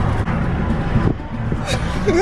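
Car in motion heard from inside the cabin: a steady low rumble of engine and road noise that eases about halfway through.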